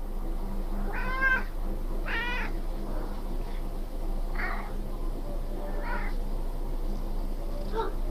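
Young Maine Coon kittens mewing: two clear, high meows about one and two seconds in, then three fainter ones spread through the rest, over a steady low hum.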